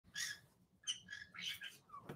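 A small pet parrot chirping faintly, a handful of short, high chirps in quick succession.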